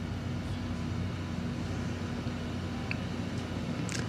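Steady low background hum, like a distant engine running.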